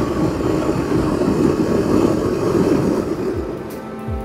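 Wind and engine noise from a Yamaha Ténéré 700 riding at road speed, a steady rush that fades out near the end as music comes in.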